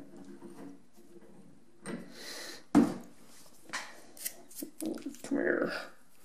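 Hands handling a brass threaded water fitting and its Teflon tape at the heater's connections. There is a rustle, one sharp knock about three seconds in, then several small clicks.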